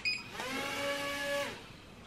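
JJRC H70 mini quadcopter's brushed motors spinning up with a steady whine for about a second and then winding down, started and stopped by the controller's take-off/land button, after a click at the start.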